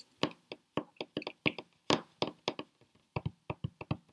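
A run of about twenty quick, irregular sharp taps and clicks, several a second with a brief lull near the end.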